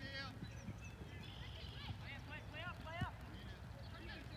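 Soccer field ambience: low wind rumble on the microphone, a quick series of short repeated calls from distant voices, and a single sharp thump about three seconds in.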